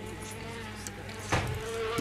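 Housefly buzzing steadily, with a short sharp noise about a second and a half in.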